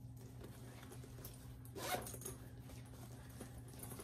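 Side zippers of a handmade fabric tote (Swoon Harriet expandable bag) being unzipped to let the sides expand, a faint rasping.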